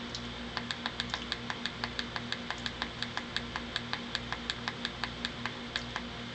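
Small tactile push button on a PWM signal generator module clicked rapidly and evenly, about five times a second, stepping the PWM duty cycle down. A faint steady hum runs underneath.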